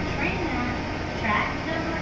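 A woman's voice on the station public-address system, over a steady low hum from the standing electric train and the station.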